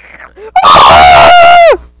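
A person screaming loudly for about a second, the voice distorting at its peak and the pitch falling away sharply as it ends.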